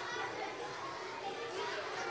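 Many children's voices chattering together in a large hall, an indistinct murmur with no single clear voice.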